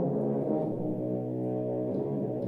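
An ensemble of French horns holding a chord together. A low note comes in about half a second in and is held under the others.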